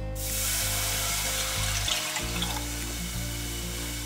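Rice wine vinegar poured into a very hot saucepan of dry-toasted spices, hissing and sizzling as it hits the metal. The hiss starts suddenly and slowly eases. Background music plays underneath.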